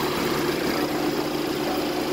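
BMW car engine idling steadily with an even hum, running again after the starter lock was reset following new front electronic module programming.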